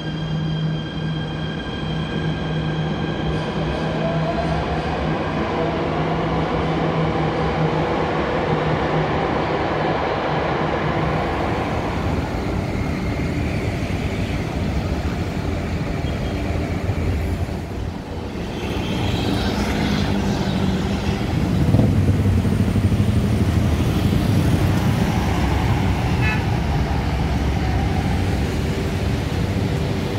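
Jakarta MRT electric train moving out along an underground platform: a steady motor hum with a whine that rises in pitch as it picks up speed, then fades. Partway through it gives way to city road traffic, cars and motorbikes passing, which grows louder near the end.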